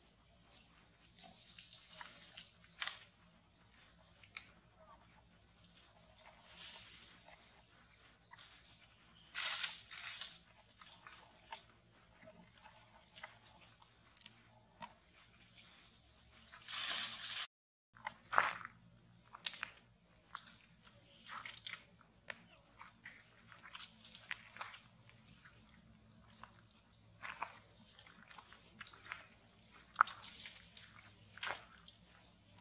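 Irregular crackling and rustling of leaves and twigs, with louder rustles about ten seconds in and again just before a brief dropout past halfway.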